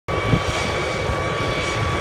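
Helicopter hovering low over the water, a steady engine and rotor noise with a thin high whine running through it.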